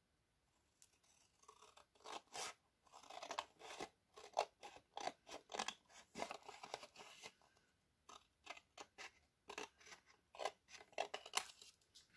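Scissors cutting through black cardstock in a long run of short, faint snips, trimming off the excess sheet.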